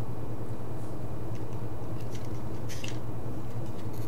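A steady low hum, with a few faint light clicks and rustles about halfway through, as of wires and the socket being handled by hand.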